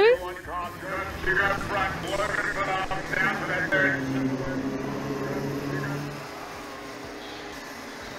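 Small racing kart engines running on the circuit, a steady drone through the middle that drops away after about six seconds, under indistinct voices.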